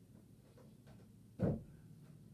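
Guitar amplifier idling with a low, steady hum, broken once about one and a half seconds in by a single dull thump.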